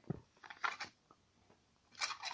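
A few faint clicks and rubs of hands handling a plastic Amazon Fire TV Stick remote in the first second, then near silence.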